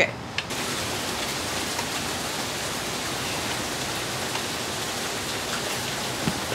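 Heavy rain pouring down, a steady even hiss that starts abruptly about half a second in.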